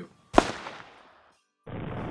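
A single bolt-action rifle shot about a third of a second in, its report echoing and dying away over about a second.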